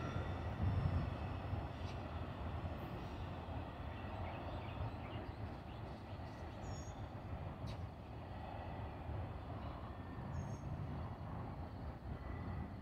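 Steady low rumble of a double-stack intermodal freight train's cars rolling past on the track.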